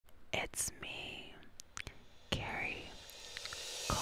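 A woman whispering close into a microphone, breathy and quiet, with soft mouth clicks and hissing sibilants between the words.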